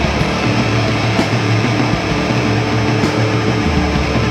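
Heavy metal band playing live at full volume: electric bass and guitar riffing over drums, with cymbal crashes cutting through a few times.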